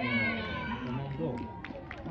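Raised voices shouting on a football pitch during a goalmouth scramble, with a few sharp knocks in the second half.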